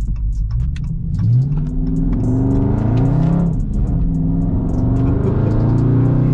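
Dodge Charger Scat Pack's 392 (6.4-litre) Hemi V8 accelerating hard, heard from inside the cabin: the engine note climbs from about a second in, drops briefly at a gear change about three and a half seconds in, and climbs again.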